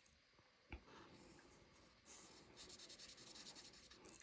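Faint scratching of a silver Sharpie marker colouring on paper, with quick back-and-forth strokes in the second half and a single soft tap just under a second in.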